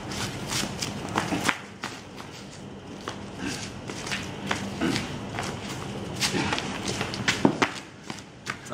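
Flip-flops slapping and scuffing on concrete in irregular steps during kicks and spins. A low steady hum stops about a second and a half in.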